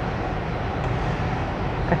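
Steady low rumble and hiss of background room noise, with no distinct event.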